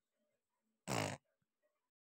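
A baby blowing a raspberry: one short buzzing burst from the lips about a second in.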